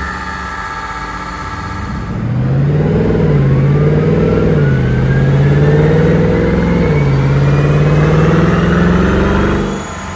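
2014 Mercedes-Benz C63 507 Edition's 6.2-litre V8 on its stock exhaust, running on a chassis dyno during a baseline run. About two seconds in it gets louder, its pitch rising and falling a few times before holding a steady note, and it drops back just before the end. A faint whine climbs steadily in pitch alongside.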